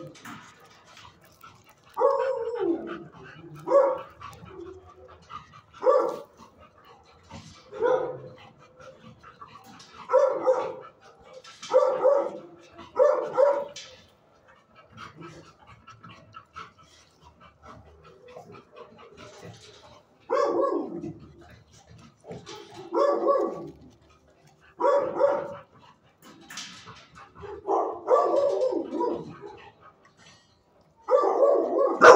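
A dog barking: about a dozen short, pitched barks, each falling in pitch at the end. They come in two runs, with a pause of several seconds in the middle.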